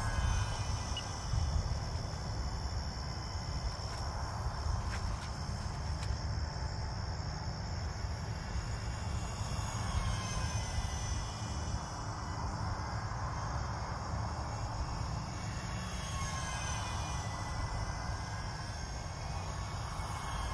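Faint whine of the E-flite UMX Me 262's twin electric ducted fans, slowly rising and falling in pitch as the model jet flies about overhead. Behind it are steady crickets and a low rumble.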